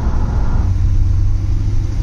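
Truck on the move, heard from inside the cab: its LS-swapped V8 gives a steady low drone that settles and evens out about half a second in.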